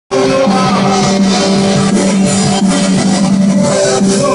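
Live punk rock band playing loud and steady, with electric guitars and drums, the guitars holding chords; no singing yet.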